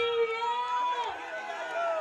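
A person's voice, with long drawn-out notes held about a second each, over faint crowd noise.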